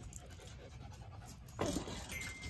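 Silver fox panting faintly close by, followed near the end by a single spoken word.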